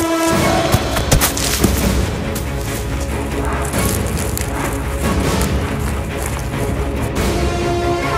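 Horror film score: dense, sustained music over a low rumble, with a boom and a few sharp hits in the first two seconds.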